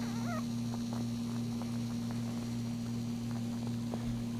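A newborn Maltese puppy gives a short, high, wavering squeak about half a second in, over a steady low electrical hum.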